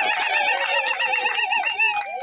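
A woman ululating: a high, trilling cry that wavers rapidly up and down in pitch, held unbroken for about two seconds and falling away at the end.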